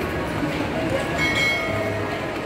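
Busy shopping-mall atrium ambience: the murmur of a crowd echoing through the large hall, with a brief high tone a little over a second in.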